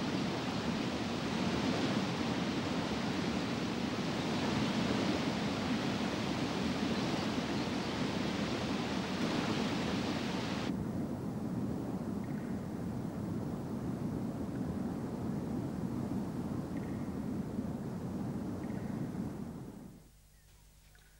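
Rushing water of a waterfall, a steady hiss of falling water. About halfway through the hiss suddenly turns duller, leaving a lower rushing that fades out near the end.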